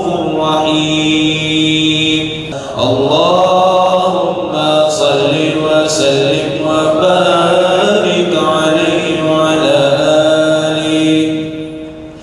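A man's amplified voice chanting Quranic verses in long, drawn-out melodic phrases, holding and bending each note, with a short break a little after two seconds and a fall near the end.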